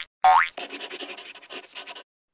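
Intro sound effects: a quick rising boing, then a rapid run of scratchy pen-on-paper strokes, a handwriting sound effect, for about a second and a half.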